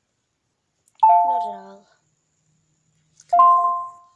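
A doorbell-like chime sounds twice, about two seconds apart. Each ring is a short, steady two-note tone that fades away.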